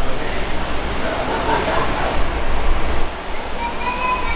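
Steady low rumble of a coach's diesel engine running, with voices in the background.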